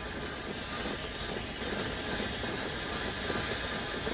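Steady mechanical running noise of a working steam engine, an even hiss and rumble with no distinct beats.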